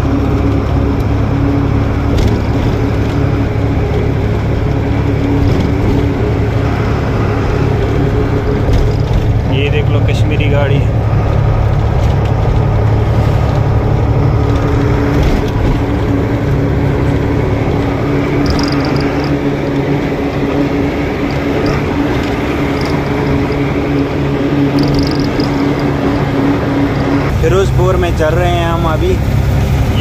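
Truck engine and road noise heard from inside the cab while cruising on a highway, a steady drone. Near the end the drone changes and a voice comes in.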